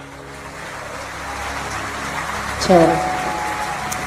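The last held notes of a live worship song fade out, then an audience applauds, a dense even clatter that builds over the next few seconds. A man's voice speaks a short word over it near the end.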